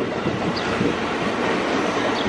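Electric commuter train (KRL) running past on the rails: a steady rolling noise of wheels on track.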